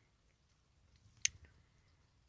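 Mostly quiet, with one sharp click about a second in, from metal kitchen tongs being handled over tortilla wraps.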